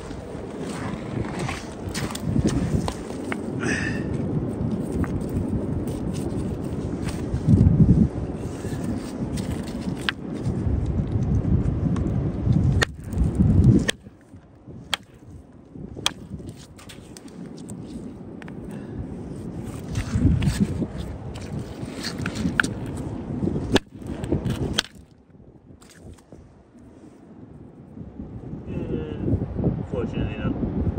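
Wind buffeting the microphone on a shingle beach, a steady low rumble with louder gusts, over scattered sharp clicks and knocks of stones and footsteps on pebbles. The sound drops off abruptly twice where the clips change.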